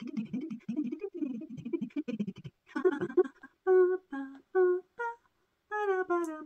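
A woman murmuring under her breath, then four short, evenly spaced sing-song syllables, as she counts through the rounds of a knitting stitch-pattern repeat.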